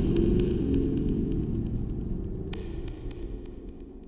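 Low humming drone of a logo-reveal soundtrack fading out slowly, with faint short high ticks over it.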